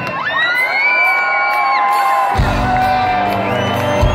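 Live hard rock band on stage over a cheering crowd. Long sustained tones bend up at their start, then about two and a half seconds in a heavy low chord from the bass and drums comes in and rings on.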